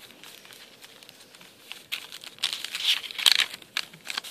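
Coffee-dyed paper pages of a handmade journal rustling and crinkling as they are turned by hand. Faint at first, then a louder run of rustles in the second half, loudest about three seconds in.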